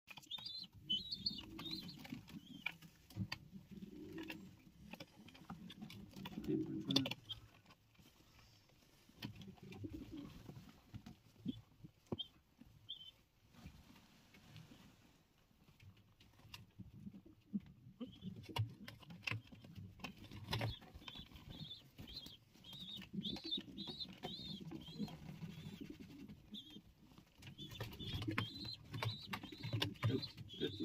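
Racing pigeons cooing in low, repeated phrases that stop and start with a few quiet gaps, with thin, high chirping over them at the start and through the last third.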